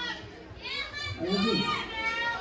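People's voices calling out and talking in a crowded club, with no music playing.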